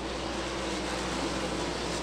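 Several winged sprint cars' 410-cubic-inch V8 engines running at race speed, heard together as a steady, even drone.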